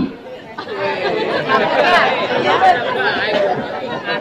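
An audience of many voices calling out answers at once in an overlapping jumble of chatter, starting about half a second in.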